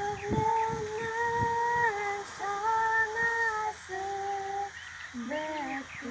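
A girl singing solo, holding long notes that step up and down in pitch, with short breaks for breath between phrases; the last phrase drops lower.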